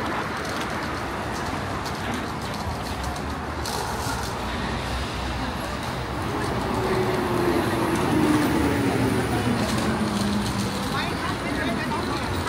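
Busy street ambience: road traffic and passers-by talking. About halfway through, a city bus passes, its whine falling in pitch as it goes by.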